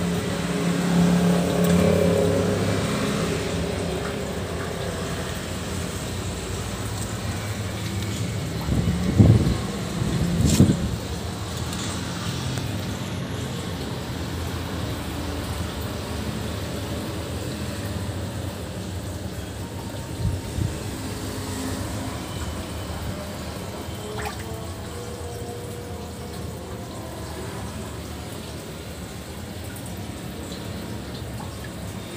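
Water running steadily from a pipe into a concrete fish pond, a continuous splashing pour. Two short, louder thumps come about nine and ten and a half seconds in.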